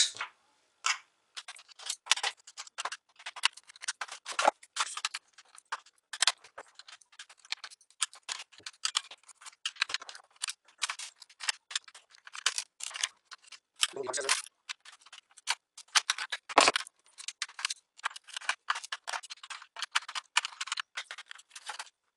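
Rapid small clicks and ticks of screws being undone on the plastic underside of a Lenovo G570 laptop, with two louder knocks past the middle.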